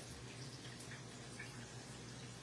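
Faint, steady sizzle of tacos frying in oil, under a low steady hum.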